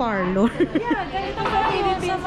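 Women chatting, with a burst of laughter about half a second in.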